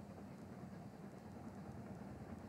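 Faint, steady low background rumble of stadium ambience under the TV broadcast, with no commentary.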